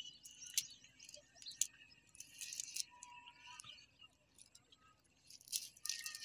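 Faint rustling and sharp little clicks of a cast net being lifted and shaken out by hand, with birds chirping in the background.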